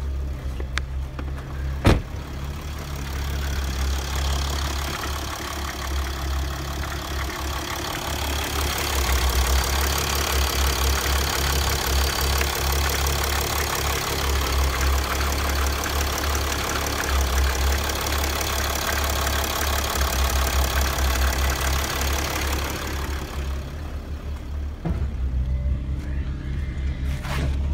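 Mercedes-Benz E-Class (W211) engine idling steadily, with a single sharp click about two seconds in. The engine sound is fuller and louder through the middle, heard close to the open engine bay.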